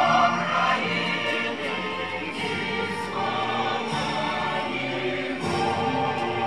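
A choir singing slow, held notes.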